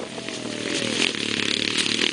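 Quad ATV engine running as it moves away after passing close by, its pitch falling over the first second.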